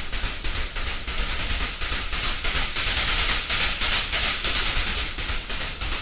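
Synthesized noise percussion from Zebra 2, a mix of white and pink noise: a bright, dense hiss with most of its energy in the highs and a faint, even pulsing of repeated hits.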